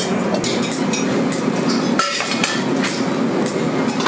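Steady, loud mechanical din of workshop machinery running, with scattered light metallic clinks of metal pans being handled.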